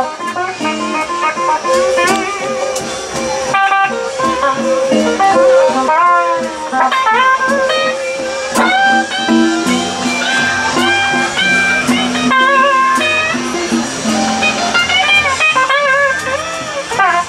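Live electric blues band playing an instrumental passage: an electric guitar plays lead lines full of bent notes and vibrato over bass guitar and drums.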